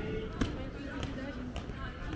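Footsteps striking stone paving, about one step every half second or more, over the talk of people nearby.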